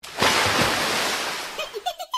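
A rushing, splashing water sound effect that bursts in at once and fades away over about a second and a half, with a short bit of voice near the end.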